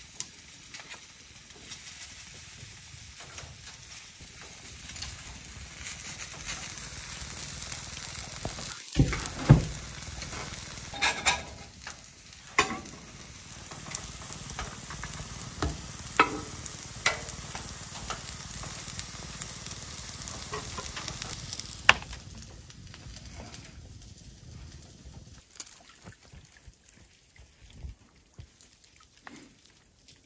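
Vegetable fritters sizzling as they fry on a griddle on a wood cookstove, with sharp clicks and scrapes of a metal spoon and spatula on the bowl and griddle. The sizzle grows quieter after about twenty-two seconds.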